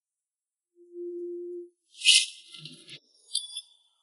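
Dramatic sound effects added in editing: a short steady tone about a second in, then a high shaker-like rattling swoosh at about two seconds, and a few high chirping glints near the end.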